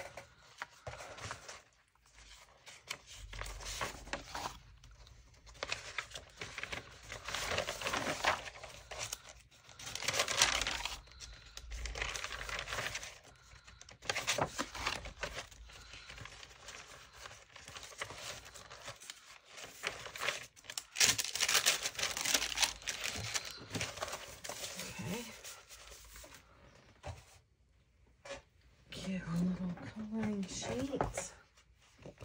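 Sheets of paper being handled and stacked, rustling and crinkling in irregular bursts.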